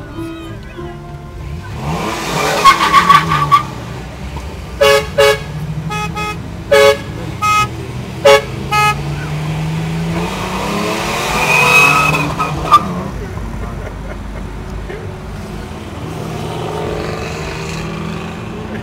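Car horns sounding in a string of about six short honks, heard from inside a moving car over its engine and road noise. A louder rush of engine and road noise swells about two seconds in and again around eleven to twelve seconds, while the car's own engine note rises as it speeds up.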